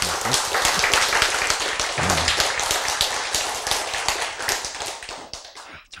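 Audience applauding, a dense spread of many claps that dies away near the end.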